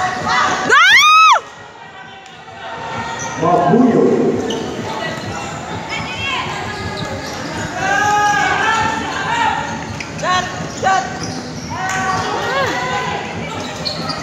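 High-pitched shouts and cries from a girls' futsal game in a large hall: one loud rising shriek about a second in, then many short calls from about six seconds on. The futsal ball thuds on the hard court.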